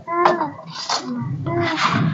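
A woman's voice saying a brief "haan" twice, with two short hissing rushes in between.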